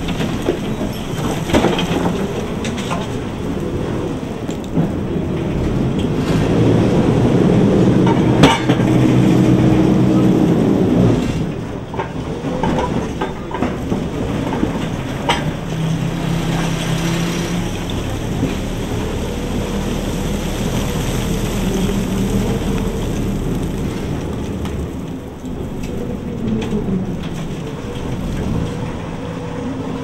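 EKG-12 electric rope shovel heard from its cab, its drive motors and gearing whining and humming with a pitch that rises and falls as the bucket swings, dumps coal into a railway dump car and digs. There are a few sharp metallic knocks from the bucket and rigging, the loudest about eight seconds in.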